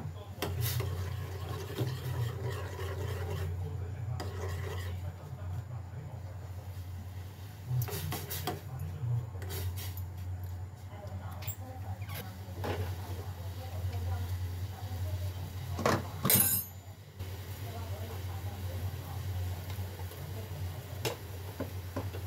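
A metal spoon clinks against a small metal pot of broth on a gas stove a handful of times as the broth is scooped for tasting. One louder, ringing clink comes about sixteen seconds in, over a steady low hum.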